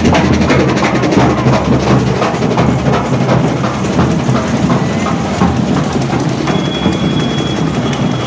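Procession drum band playing fast, continuous drumming. A thin, steady, high-pitched tone joins in near the end.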